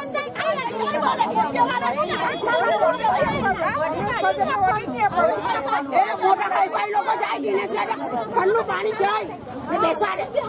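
Several women talking over one another in an outdoor crowd, a continuous stream of overlapping voices.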